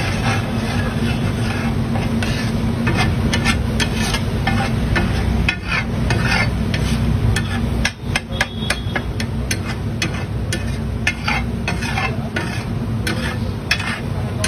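Metal spatulas clinking and scraping on a large flat tava griddle, a quick irregular run of sharp clicks, over a steady low hum.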